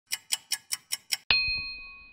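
Sound-logo effect: six quick clock ticks, about five a second, then a single bell-like ding that rings on and fades.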